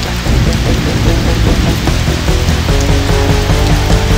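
Loud rock music, with distorted electric guitar over heavy bass.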